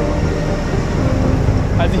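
Low engine rumble from a road-rail excavator travelling away along the railway track, under the fading end of background music. A man's voice starts just before the end.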